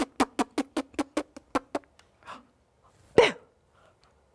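A person laughing: a quick run of about ten short pulses in the first two seconds, then one louder vocal sound about three seconds in, its pitch falling.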